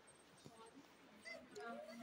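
Near silence: quiet hall room tone, with faint distant voices in the second half.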